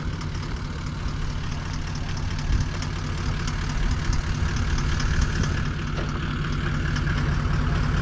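Toyota Land Cruiser V8 engine idling steadily, growing slowly louder as it comes closer, with a quick, even ticking above the low drone.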